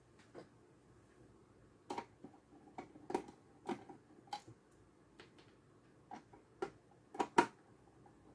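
Small screwdriver working the screw terminals of a solar charge controller, giving a series of light, irregular clicks and ticks as the terminal screws are turned, with a few sharper ones near the end.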